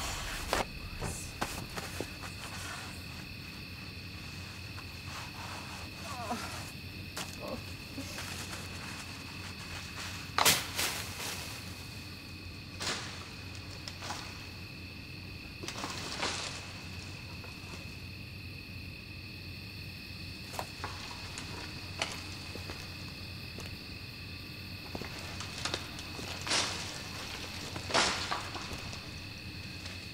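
Steady high chirring of night insects, broken by a few sharp knocks and clicks, the loudest about ten seconds in and again near the end.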